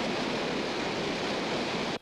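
A loud, steady rushing noise with no tone in it, spread evenly from low to high, that cuts off abruptly at the end.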